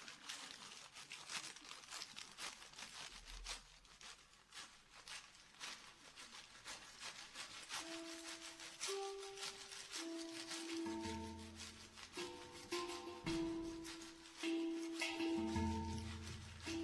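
Quiet opening of a live acoustic blues number. At first there is only a soft, scattered rattle like a shaker. About halfway in, a melody of held notes enters, and low bass notes join beneath it as the music slowly builds.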